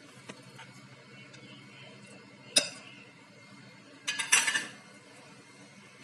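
A steel bowl clinks against a glass jar as sliced green chillies are tipped in. There are a few light ticks, one sharp clink about two and a half seconds in, and a short clatter a little after four seconds.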